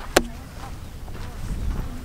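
Wind rumbling on the microphone of a handheld camera, with one sharp knock just after the start.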